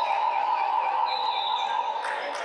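A long, steady signal tone of about two and a half seconds as play in a basketball game is stopped, ending just before the close.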